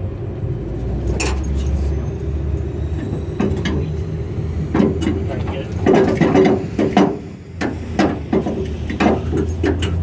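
A dog biting and tugging at a tire toy hung on straps from a truck's underside, the tire and its hanger rattling and knocking irregularly, busiest in the second half. A steady low hum runs underneath.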